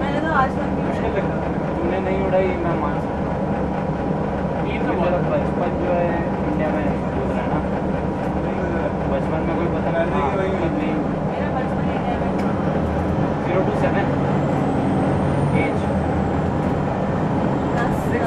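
Detroit Diesel Series 50 engine of a 2001 Gillig Phantom transit bus running steadily, its note shifting about thirteen seconds in, with people talking.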